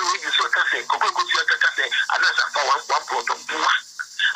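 Speech only: a person talking without pause.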